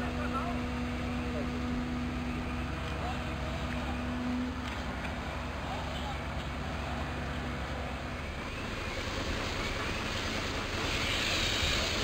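Fire trucks' engines running at a fire scene: a steady low engine rumble, with a steady hum that stops about four and a half seconds in and a hiss building near the end.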